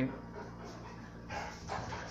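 A dog making a couple of short, soft sounds about a second and a half in, over quiet room tone.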